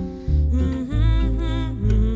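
Acoustic ensemble music: guitars and a double bass with low notes changing about every half second. Above them a wordless voice carries the melody with vibrato.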